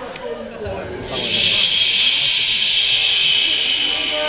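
A steady, loud hiss sets in about a second in and holds, over faint crowd noise.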